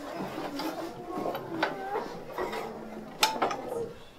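Rustling and crinkling of gift packages being handled in a cloth sack, a string of small clicks and crackles, the sharpest a little after three seconds in, with soft voices underneath.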